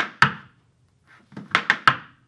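Irish dance hard shoes striking a wooden dance floor in a one-footed pullback step: two sharp taps, a short pause, then a quick run of taps about one and a half seconds in.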